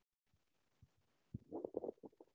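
Near silence on a webinar voice feed, broken near the end by a brief, faint low sound from the presenter's mouth or throat.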